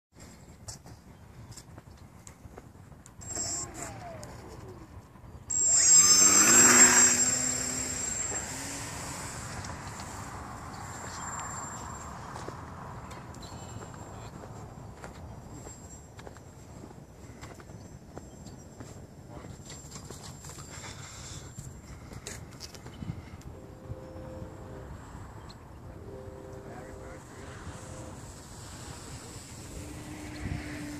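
Radio-controlled model airplane's motor opening up for takeoff about five seconds in, a loud rising whine that quickly falls away as the plane climbs out. Its faint drone then carries on at a distance under a steady rushing background.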